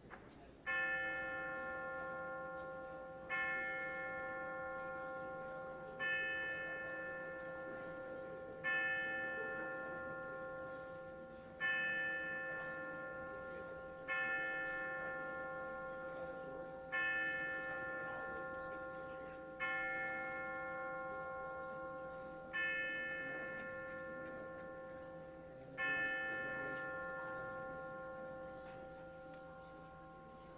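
A single bell struck ten times on one pitch at a slow, even pace, about every three seconds. Each stroke rings on and fades into the next.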